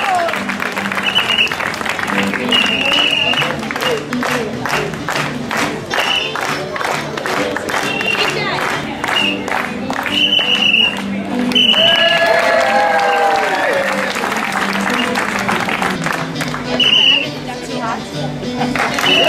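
An audience claps along in a steady rhythm, about three claps a second, for several seconds in the middle, over background music. A clown's whistle gives short high toots now and then.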